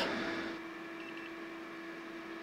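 Faint steady hum at one pitch from running electrical equipment, with two or three faint short high beeps about a second in.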